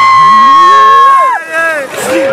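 A boy's long, high-pitched yell held on one note for over a second, then falling away, with other excited voices underneath.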